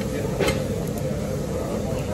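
Steady low rumble of background noise with a faint steady hum, and one sharp click about half a second in.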